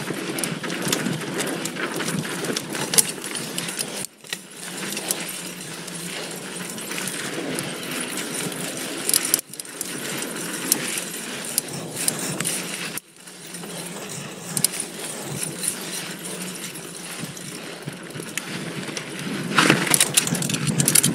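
Mountain bike (2019 Giant Stance 2) ridden fast down dry dirt singletrack: tyres rolling over dirt and small stones, the chain and frame rattling with many small clicks, and wind on the microphone. The sound drops out briefly three times.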